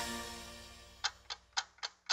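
The last note of the music fades out, then a clock-ticking sound effect starts about a second in: sharp, even ticks about four a second.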